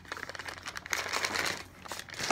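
Brown paper bag crinkling and rustling as a DVD case is pulled out of it by hand, a dense run of quick crackles that dies down near the end.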